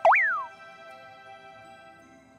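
A cartoon-style sound effect right at the start: a quick swoop up in pitch that then slides down over about half a second, over soft background music.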